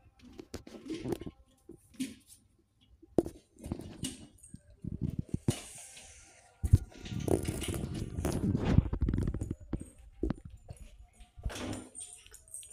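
Handling a mixer grinder's steel jar and plastic lid on a countertop: irregular clicks, knocks and scraping, with a louder, busier stretch of rattling a little past the middle.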